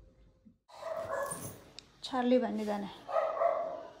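A puppy barking and yipping in play, several short pitched bursts beginning about a second in.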